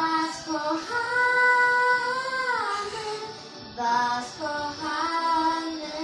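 Young girls singing a song at a microphone, with a long held note about a second in that slides down, then shorter sung phrases.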